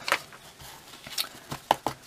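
A few light clicks and taps from craft supplies being handled on a desk around an open embossing powder tub: one near the start, then three more close together in the second half.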